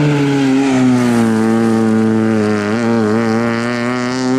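Rally car engine running hard as the car approaches on a stage; the engine note drops over the first couple of seconds, wavers briefly about three seconds in, then climbs again as it accelerates.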